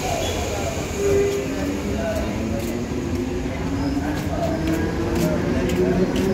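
Cairo Metro Line 1 train moving alongside the platform, with a low rumble and a motor whine that rises steadily in pitch from about halfway through as it gathers speed, plus a few sharp clicks. Voices of people on the platform are heard under it.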